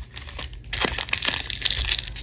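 Plastic wrapper of a baseball card pack crinkling as it is handled and opened, a dense crackle that starts just under a second in after a few light taps of cards on the table.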